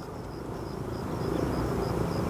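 E-flite EC-1500 twin electric RC plane in flight at a distance: a steady hum of its two electric motors and propellers, growing gradually louder.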